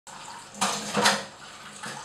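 Water running from a kitchen tap into a paper cup and a stainless steel sink, with two louder splashes about half a second apart, near the start.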